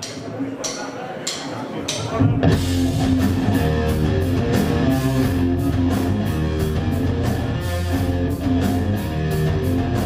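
Live rock band with distorted electric guitar, bass and drum kit starting a song: three count-in taps about two-thirds of a second apart, then the full band comes in together about two and a half seconds in and plays on loudly.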